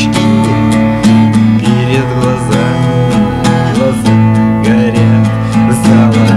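Instrumental passage of a song from a cassette recording: strummed guitar chords held over a steady beat.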